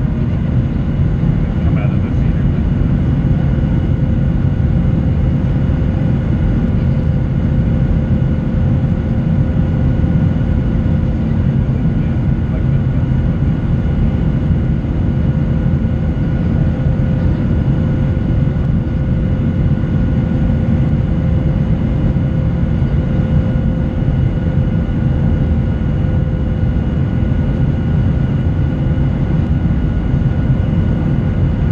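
Steady cabin noise of a Boeing 737-800 in flight, heard from a window seat behind the wing: a deep, even rumble of the CFM56 engines and airflow, with a few faint steady whining tones above it.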